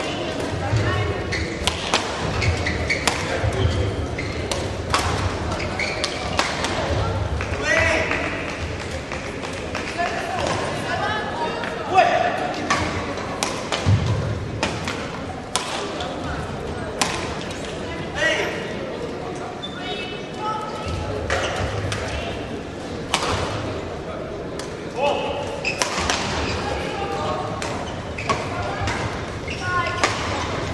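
Badminton rackets striking a shuttlecock in rallies: repeated sharp, short hits, with footfalls on the court and voices murmuring in the background of a large hall.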